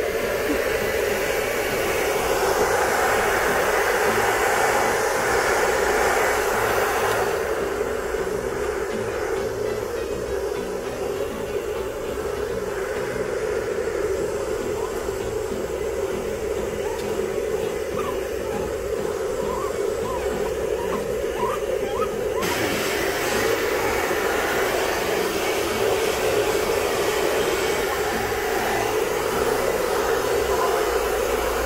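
Hair dryer running steadily on medium fan speed with heat on. Its hiss goes duller from about a quarter of the way in, then turns bright again about three quarters in.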